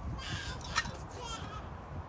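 A crow cawing a couple of times in the background, with one sharp click a little before the middle.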